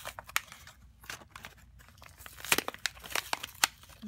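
A pacifier's plastic blister pack and cardboard backing card being torn and peeled open by hand: irregular crinkling with sharp snaps of plastic. The loudest snaps come a little past halfway and again near the end.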